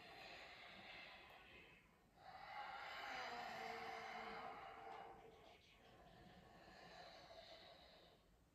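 Faint, slow breathing by a man holding a yoga lunge: three long breaths in and out, the middle one loudest, timed to bending and straightening the front knee.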